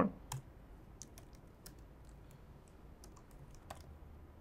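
Faint computer keyboard keystrokes: a dozen or so light clicks at an uneven pace.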